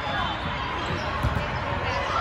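Indoor volleyball rally: the ball being struck, with a low thud about a second in, amid players' calls and many voices echoing around a large sports hall.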